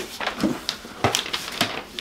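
Paper and cardboard being handled: irregular rustling with a few light knocks and clicks as a box is rummaged and a letter is unfolded.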